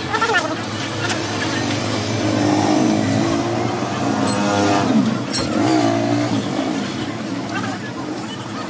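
Motor vehicle engines going by, their pitch rising and falling twice, with voices in the background.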